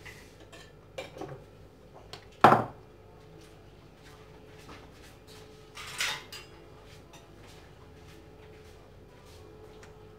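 A porcelain mixing bowl and utensils handled on a granite kitchen counter: a few light clinks about a second in, one sharp knock about two and a half seconds in, and a brief scrape around six seconds in, over a faint steady hum.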